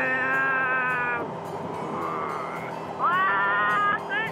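A person singing slowly in long held notes, the first about a second long and the second rising into a sustained note near the end. The voice sounds thin and narrow, as through a motorcycle helmet intercom, over steady riding and wind noise.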